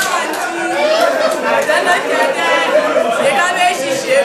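A room full of schoolchildren talking and calling out at once, many voices overlapping in a hall-like room.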